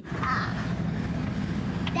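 Steady low rumble of a Toyota Land Cruiser 79 Series' engine and tyres on a dirt road, heard inside the cabin. A sharp click at the very start, and a brief voice just after it.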